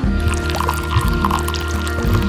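Background music, with wet cement being poured from a small cup faintly under it.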